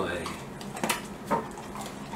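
A young dog crunching a hard treat taken from a hand: a few sharp, crisp crunches, the two loudest about a second in and half a second later.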